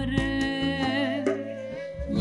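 Live acoustic Kurdish folk music: a woman singing, accompanied by a long-necked lute (bağlama) and a violin.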